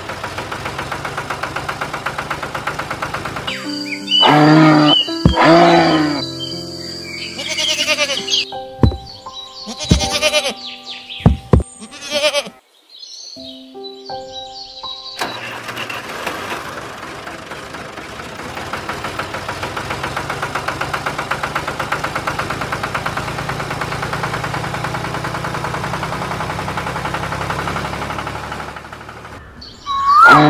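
Added soundtrack for a toy video: a steady, finely pulsing engine-like running sound, goat bleats about four to six seconds in, then a stretch of music with held notes and a few sharp strikes. The engine-like sound returns and runs steadily through the second half.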